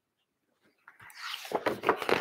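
Pages of a picture book being turned: a crisp paper rustle with quick flaps and crackles that starts about a second in and grows louder toward the end.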